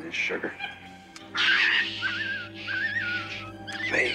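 A capuchin monkey screeching for about two seconds with a wavering, shrill pitch as it is given an injection, over a held music chord.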